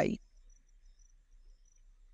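A voice finishes a word at the very start, then faint, short, high chirps repeat about every half second over a quiet background.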